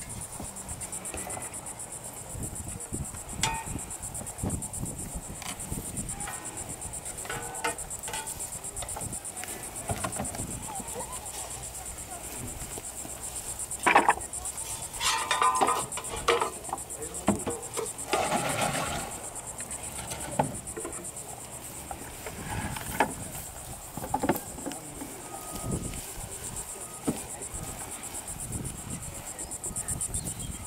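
Insects in a steady high-pitched drone, with scattered knocks and clatter, the sharpest about halfway through.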